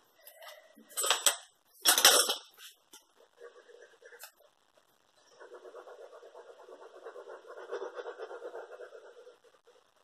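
Two sharp handling knocks about one and two seconds in, then from about halfway a steady scratchy rubbing as the foam tip of a Tombow liquid glue bottle is drawn along a strip of patterned paper, spreading glue.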